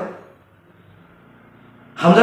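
A pause in a man's speech, with only faint, steady background noise.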